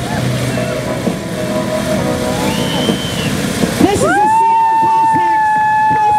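Several old motorcycles running as they ride together in formation. About four seconds in, a loud, steady high tone starts and holds.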